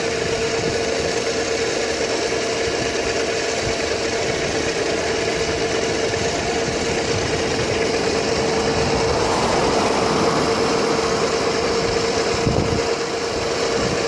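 Electric scooter riding along: a steady motor whine holding one pitch, under wind rushing over the microphone and tyre noise.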